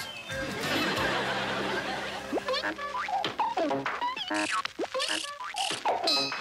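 Closing theme music giving way to a novelty production-logo jingle of cartoon sound effects: springy boings and quick sliding whistles, with short bright toots, one after another.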